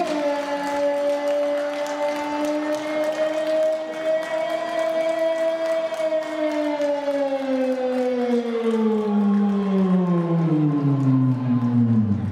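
A loud siren-like musical tone, held steady for about six seconds and then gliding slowly down in pitch until the end.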